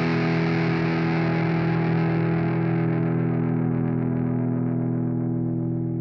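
A distorted chord on a Gibson Les Paul electric guitar through Bias FX amp modelling, held as the song's final chord. It sustains as one steady chord while its bright upper ring slowly dies away, the note starting to decay near the end.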